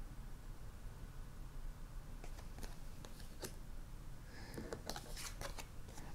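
Faint handling of tarot cards: light clicks and brief slides of card stock as a card is drawn from the deck and turned over, starting about two seconds in and coming more often near the end. A low steady room hum lies under it.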